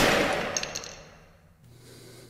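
The last drum-kit hit of a post-metal band's song, with cymbals ringing and fading out over about a second and a half. After it comes a faint steady hum.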